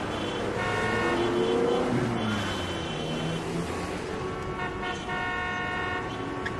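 Vehicle horns honking several times over steady street traffic noise, with a longer held honk near the end.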